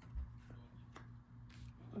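Tarot cards being handled and laid down on a cloth-covered table: a soft knock just after the start, then a few faint ticks and taps.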